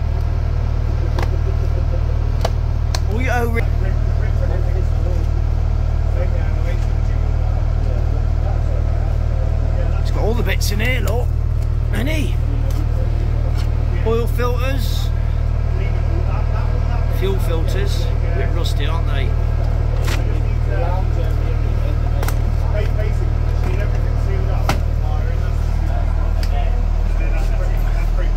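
Old inboard engine of a 1970s canal cruiser running steadily under way, a deep even drone heard from inside the cabin. Scattered knocks and rustles of boxes and spare filters being handled in a locker.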